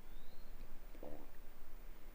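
Quiet room tone with a steady low hum and a faint, short low sound about a second in.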